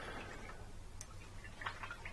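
A paintbrush being swilled in a water pot, heard as a few faint clicks and light taps.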